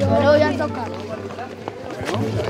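Several boys' voices talking and calling out over one another, busiest in the first half second and then thinning out, over a steady low tone.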